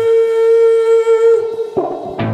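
Live garage-blues band music: a single sustained high note rings steadily for about a second and a half after the bass drops out, then breaks off as a short noisy burst comes in near the end.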